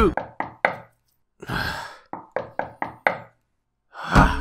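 A series of sharp knocks: three quick strokes, a short rushing noise, then six more strokes in quick succession, ending in silence.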